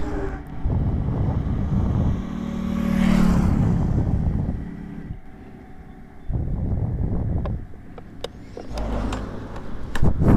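Road traffic passing close by: one vehicle swells to its loudest about three seconds in with a steady engine hum, then fades, and more vehicle noise rises and falls later.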